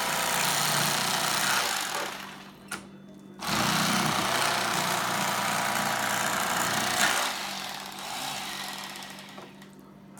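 Electric fillet knife running, its reciprocating serrated blades sawing a fillet off a perch. The motor stops briefly about two and a half seconds in, runs again for about four seconds, then fades out.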